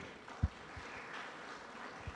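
Audience applauding, fairly quiet, with one low thump about half a second in.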